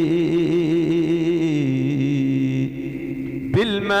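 A man chanting an Arabic devotional poem in praise of the Prophet solo into a microphone, drawing out a long wavering note that steps down to a lower held note. It fades about three seconds in, and the next line starts with a rising glide near the end.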